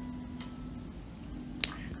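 Quiet room tone with a faint low hum, and one sharp click of a computer mouse about one and a half seconds in.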